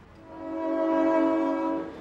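A train horn sounds one long, steady chord of several tones, about a second and a half long, fading out near the end.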